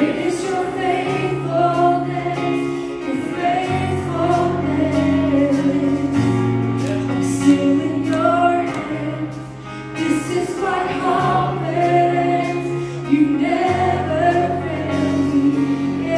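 Live gospel worship music: women's voices singing together in long, held notes over a band accompaniment with sustained low bass notes.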